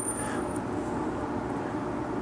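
Steady background hum, with a faint high-pitched whine for the first half second. No distinct click of the eyelet being seated on the anvil stands out.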